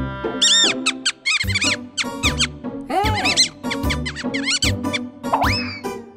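Cartoon background music with a bouncy bass beat, overlaid by a run of short, high squeaky chirps that rise and fall in pitch, coming in quick clusters about every second.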